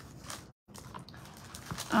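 Faint rustling of paper sheets being slid out of a clear cellophane sleeve, with the sound cutting out completely for a moment about half a second in.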